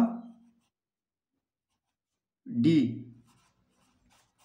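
Pencil writing on a paper workbook page: faint, light scratching strokes in the second half, after a stretch of near silence.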